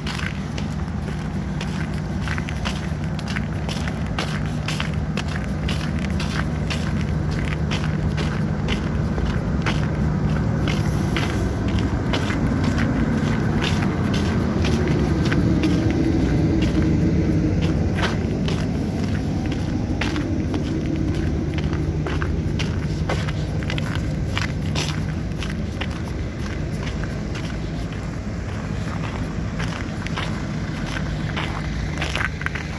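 Footsteps crunching on packed, icy snow at a steady walking pace, about two steps a second, over a steady low engine hum. A vehicle's sound swells and fades in the middle.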